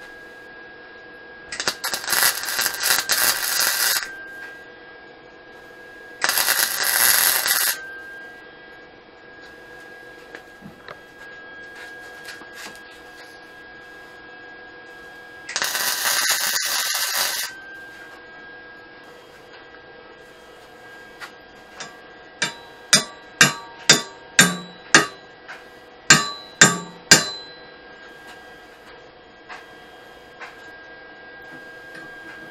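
Wire-feed (MIG-type) welder laying three short tack welds on a steel mini bike frame, each a burst of arc crackle lasting a couple of seconds, over a steady electrical hum and whine. Near the end come about a dozen sharp metallic taps in quick succession.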